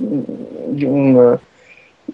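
A man's long, drawn-out hesitation sound, a held "ehhh" at speaking pitch that grows louder and then stops about a second and a half in, followed by a brief quiet.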